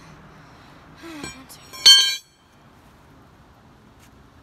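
A single sharp clink of a hard object being struck, ringing briefly, about two seconds in, after a softer knock about a second earlier.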